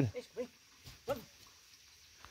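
A dog giving a few brief whines, the clearest about a second in.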